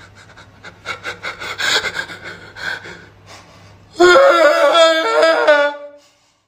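A man sniffing hard and repeatedly, many quick sniffs in a row, then letting out a loud, drawn-out vocal moan about four seconds in.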